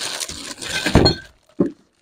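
Plastic bag rustling and glass bottles clinking as bottles of wine and drink boxes are packed into a black polythene bag, with a thump about a second in.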